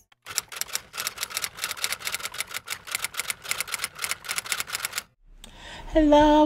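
Typewriter sound effect: a fast, even run of key clacks that stops about five seconds in, as if text were being typed out letter by letter.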